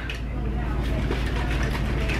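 A steady low hum in the room, with faint handling noise from a plastic shaker bottle.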